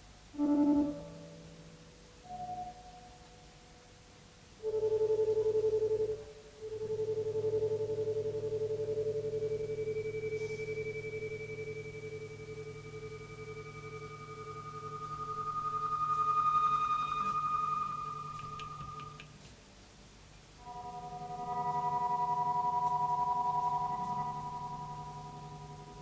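Slow, spaced-out improvised electric guitar music: long sustained notes that swell and fade, a single held note through the middle with a higher tone rising over it, and several notes sounding together near the end, without drums.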